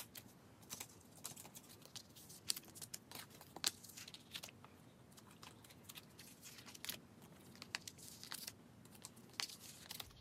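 Photocards being slid into the pockets of a plastic binder sleeve page: faint, scattered crinkles and light clicks of card against plastic, with one sharp click right at the start.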